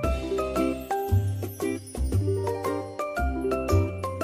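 Background music: a light melody of short, chiming pitched notes over a bass line whose notes change about once a second, with a regular beat.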